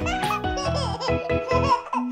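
A baby giggling and laughing in short bursts over cheerful children's music with a steady beat.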